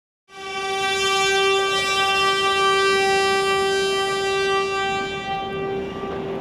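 Ceremonial trumpet fanfare: one long, steady brass note that starts abruptly and is held for about five seconds, easing off near the end.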